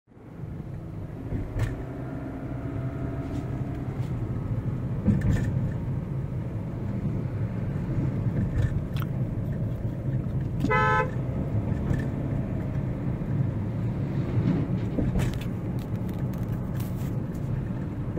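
Cabin noise of a Kia Sonet automatic driving at about 50 km/h: a steady low rumble of road and engine noise. About halfway through, a vehicle horn honks once, briefly, for about half a second. A few light knocks and bumps come through as well.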